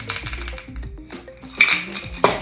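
Metal cocktail shaker tin with ice inside, rattling and ringing as the drink is strained into a coupe glass, with a sharp metallic clank about one and a half seconds in. Background music plays throughout.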